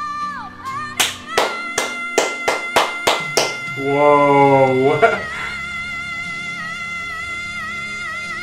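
A live power-ballad performance with held keyboard or backing chords throughout. In the first half come about eight sharp hits, roughly three a second, from drum hits or claps. A loud, held sung note follows about four seconds in.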